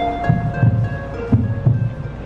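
Haunt soundtrack played over loudspeakers: eerie music of steady held tones over a heartbeat-like double thump that repeats about once a second.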